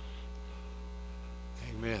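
Steady low electrical mains hum, with a man saying "Amen" near the end.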